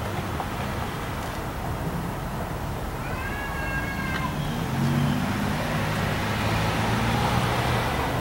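A vehicle passing on the street, its low engine hum swelling about halfway through, over steady outdoor traffic noise. A brief high whistling chirp about three seconds in.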